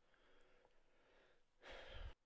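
Near silence: room tone, with one short soft rush of noise near the end.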